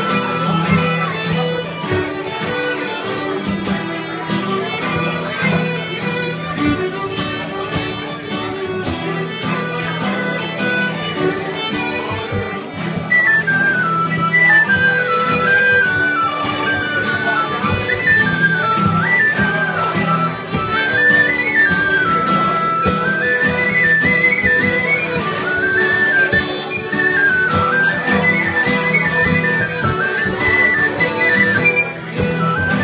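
Band music with a steady beat and sustained low notes. About 13 seconds in it gets louder and a quick, high, winding melody line comes in over it.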